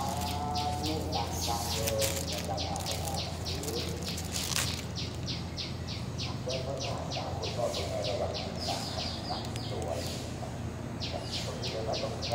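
A bird calling a long, even series of short high notes, about four or five a second, pausing about three quarters of the way through and then resuming, over a steady low hum.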